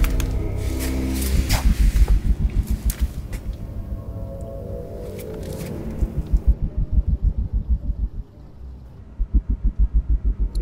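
Action-film soundtrack music with a fast pulsing low beat, at about five pulses a second, and a few sharp hits early on. The level drops briefly a little after eight seconds before the pulse returns.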